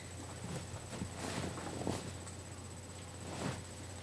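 Faint rustling and soft swishes of a person moving and turning close to a webcam microphone, over a steady low hum.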